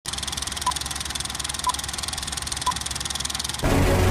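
Film-countdown intro sound effect: a fast, even film-projector clatter over a low hum, with a short high beep once a second, three beeps in all. Music comes in suddenly near the end.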